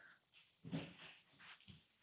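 Near silence: room tone, with one short quiet spoken word less than a second in.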